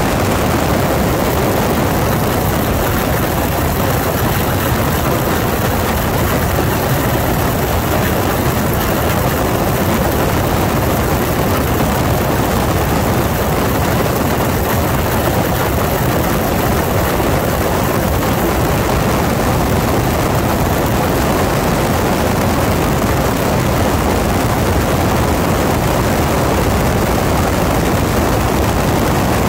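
1940 Waco UPF-7 open-cockpit biplane in steady cruising flight: its seven-cylinder Continental radial engine and propeller running at a constant pitch under a heavy, even rush of wind over the cockpit and microphone.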